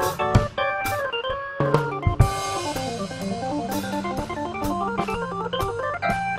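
Korg portable organ with a Hammond-style tone playing an instrumental jazz-blues solo: chords, then a fast run of short notes from about two seconds in over held low notes. A drum kit keeps time under it with cymbal and drum strokes.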